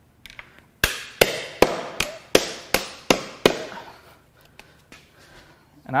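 Hammer striking the remains of a stuck, press-fit pulley on the front of a Cadillac Northstar 4.6L V8: about eight sharp metallic blows at a steady pace of roughly two to three a second, each with a short ring, then a few faint taps.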